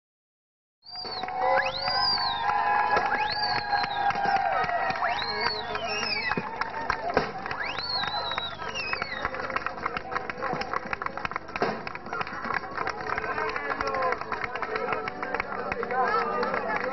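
A packed crowd talking and shouting over one another, starting about a second in. Through the first half, several high calls rise and fall in pitch above the babble.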